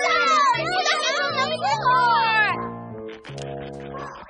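Cartoon small dog whining and yelping, high-pitched and wavering, for about two and a half seconds, over light background music that carries on alone afterwards.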